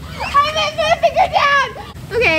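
A young person's voice talking over the steady low rumble of bubbling hot tub jets.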